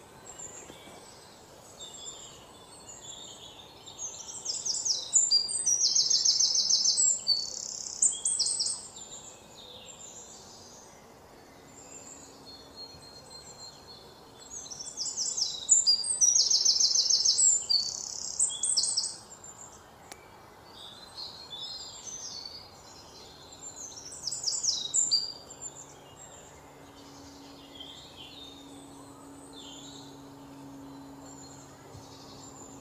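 A bird singing loud, high-pitched song made of fast trilled phrases, in bouts several seconds long that recur about every ten seconds, the last one shorter. A faint steady background lies underneath.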